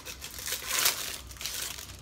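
Packaging crinkling as a roll of adhesive carbon fiber vinyl film is unwrapped by hand, loudest a little under a second in.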